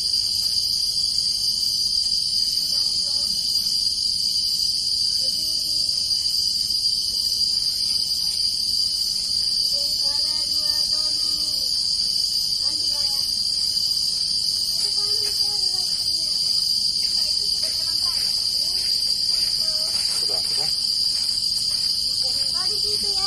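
Tropical forest insects droning: a steady, high-pitched drone with no break, with faint voices underneath.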